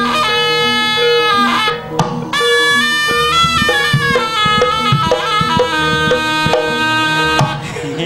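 Instrumental music from a live Javanese band: a lead melody of long held notes stepping up and down in pitch, over drums and a steady repeating low line.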